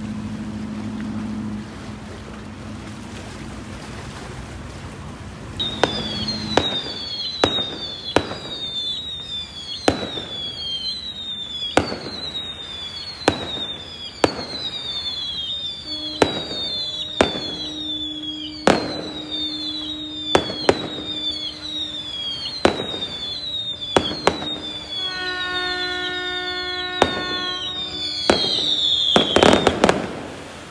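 Fireworks going off: sharp bangs every second or two over a run of repeated falling whistles, ending in a quick flurry of bangs. In the first seconds, before the fireworks start, a low ship's horn sounds.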